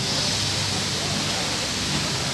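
Steady rushing noise with a low hum beneath it.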